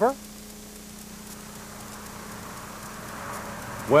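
Steady low hum under a soft hiss. A gentle rushing noise swells slowly toward the end.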